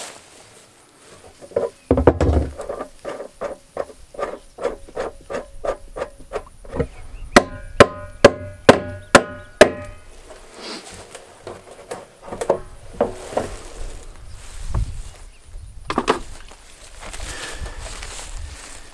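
Empty plastic 55-gallon drum being worked on by hand to get its leaking fitting out. First comes a run of quick rubbing clicks, about four a second. Then, about halfway through, a fast series of about eight sharp knocks with a hollow ring, followed by quieter handling and scraping of the drum.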